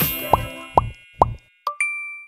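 Playful background music with three short cartoon plop sound effects. The music fades out, and a bright two-strike ding chime rings briefly near the end.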